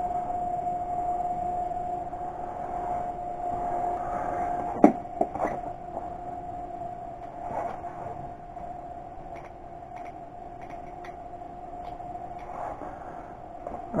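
A steady machine hum under a few soft knocks and clatters as knives and a sheathed sword are handled and set down on a bed cover. The sharpest knock comes about five seconds in.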